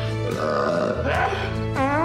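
Film soundtrack music with a brief non-speech vocal sound from the movie. A short laugh comes near the end.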